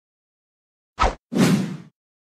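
Title-card sound effect: a short low pop about a second in, then a half-second swoosh that fades out.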